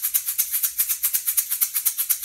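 Small handheld shaker rattled quickly and evenly by an up-and-down wrist motion, about six or seven shakes a second.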